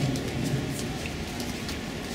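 Steady outdoor background noise: an even hiss over a low rumble, with a few faint ticks.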